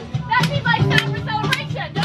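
Excited children's voices and chatter from many passengers over background music.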